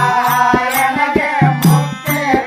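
Bhajan accompaniment: a harmonium holding a melody over tabla, with deep bass-drum strokes about twice a second and small hand cymbals clinking with the beat.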